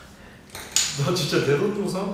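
A man's voice from about a second in, preceded by two light clicks of eating utensils at the table.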